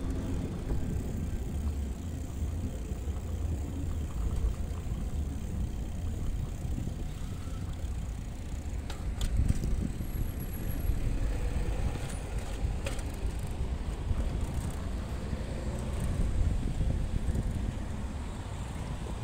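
Bicycle rolling over paving, heard from a bike-mounted camera as a steady low rumble of road vibration and wind on the microphone, with a few sharp clicks and knocks midway.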